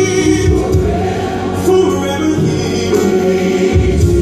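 Gospel music with a choir singing, loud and steady.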